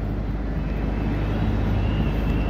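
Steady low engine hum of street traffic.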